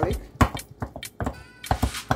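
A kitchen utensil mashing roasted eggplant and garlic in a glass bowl, knocking against the glass in about eight irregular sharp knocks as the garlic is crushed into the mash.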